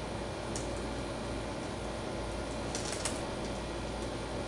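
Marker pen nib scratching on drawing paper in short inking strokes: a brief one about half a second in and a quick cluster near three seconds, over a steady hiss.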